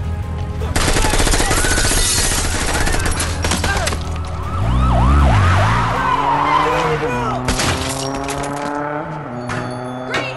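Bursts of rapid automatic gunfire, with a police siren sounding short rising-and-falling whoops over them. The first burst starts about a second in and runs a couple of seconds, with shorter bursts later on, over a dramatic backing score.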